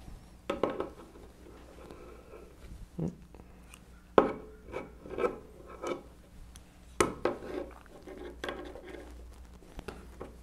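Irregular metallic clinks and taps as an adjustable wrench is handled and fitted against the steel frame and standoff nut of a 1920s Monroe mechanical calculator while a standoff is tightened; the loudest knocks come about four and seven seconds in.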